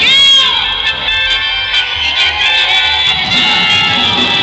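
Live duranguense band music with a woman singing into a microphone. A held note slides down in pitch in the first half second.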